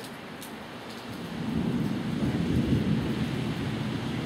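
A low rumbling noise that swells up about a second in and then holds steady.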